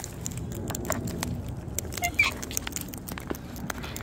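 Sulphur-crested cockatoos feeding from a plastic seed trough: a steady run of small clicks and crunches from their beaks on the seed and plastic, with one brief squeak about two seconds in.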